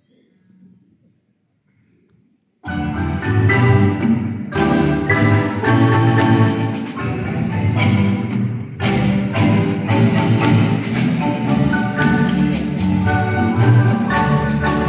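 A couple of seconds of near silence, then a large Guatemalan marimba ensemble, backed by double bass and drum kit, strikes up a danzón all together and plays on loudly in a lilting, sharply accented rhythm.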